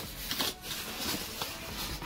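Styrofoam packing insert scraping and rubbing against the inside of a cardboard box as it is handled and pulled out, a steady rustling with a few small knocks.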